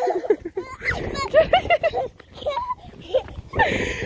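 Short, high-pitched wordless voice sounds, like a toddler babbling and squealing, with a brief breathy rush of noise near the end.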